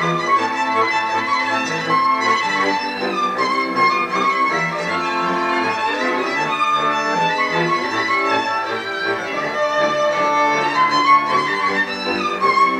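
Transylvanian folk string band, with fiddles and a cello, playing Kalotaszeg folk dance music.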